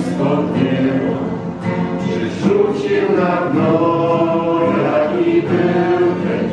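Several voices singing together in a slow religious song, with long held notes.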